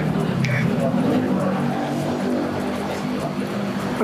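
Background music with sustained low notes that shift in steps, without words.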